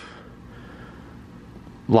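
A low, steady background hum, with a man's voice starting at the very end.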